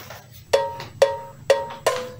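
Music intro: four struck percussion notes, cowbell-like, each with a short ringing pitch, about two a second.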